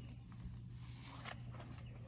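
Faint rustling and a few light taps as a person moves and handles things, over a steady low hum.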